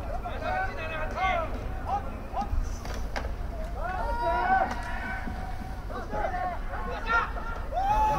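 Several voices shouting and calling out during a live American football play, with long, rising and falling calls loudest about four seconds in, over a steady low rumble.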